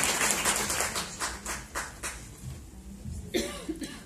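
Audience applause dying away, thinning to a few scattered claps about two seconds in. A short voice sound, like a cough or throat clearing, follows near the end.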